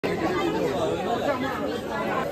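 Chatter of several people talking nearby, with no single clear voice.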